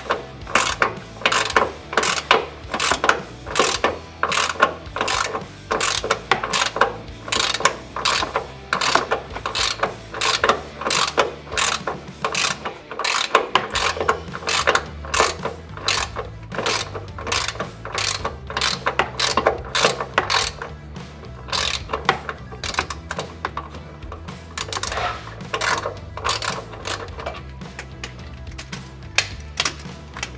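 Hand ratchet clicking steadily as it backs out a running-board bracket bolt, a few clicks a second, coming quicker and softer near the end.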